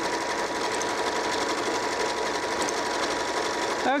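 Janome 3160 computerized sewing machine running steadily at speed as it stitches an automatic darning stitch, with a steady motor whine over the rapid needle clatter.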